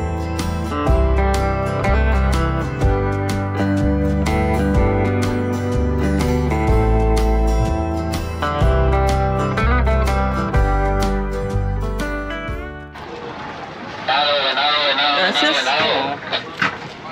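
Background music with a steady bass line that stops suddenly about thirteen seconds in, followed near the end by a person's voice.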